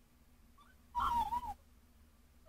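A short, high-pitched, wavering vocal sound, like a coo or a whine, lasting about half a second from about a second in, over quiet room tone.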